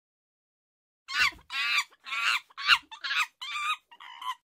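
A run of about six short pitched animal calls, starting about a second in, of the clucking kind a hen makes.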